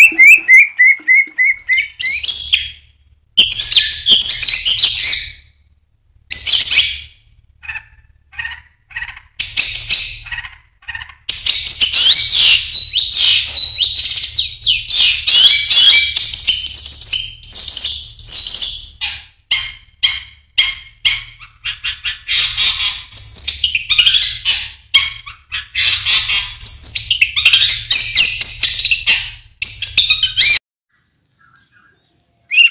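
Caged songbirds singing: a run of quick repeated whistled notes at first, then long bursts of rapid, varied chattering song broken by short pauses.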